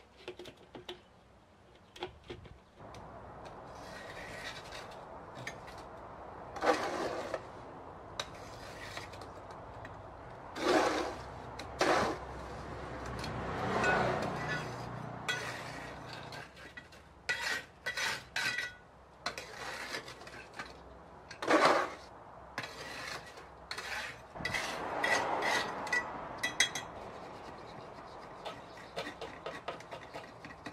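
Mortar being worked by hand with a trowel on concrete blocks: irregular scrapes of the blade on mortar and block, with sharp metallic clinks, some ringing briefly.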